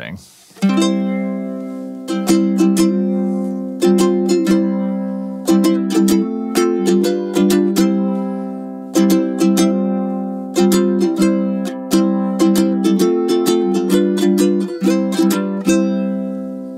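KoAloha KTM-00 solid-koa tenor ukulele strung with an unwound low G, strummed in a steady rhythm of chords that ring on between the strokes.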